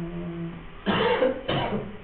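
A man coughing twice, about a second in and again about half a second later.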